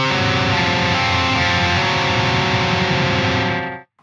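Distorted electric guitar chord, fretted at the 5th fret of the A string and the 3rd fret of the B string, ringing out steadily at an even level and cut off abruptly just before the end.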